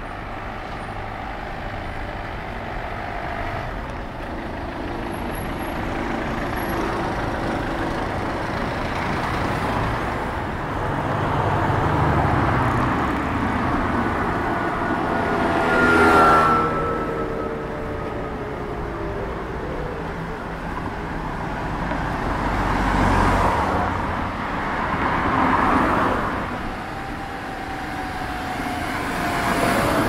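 Road traffic on a city street: cars and other motor vehicles driving past one after another, each swelling and fading. The loudest pass, about halfway in, carries a tone that drops in pitch as it goes by, and another does the same near the end.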